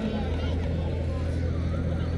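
A steady low hum, even in level throughout, with faint distant voices over it.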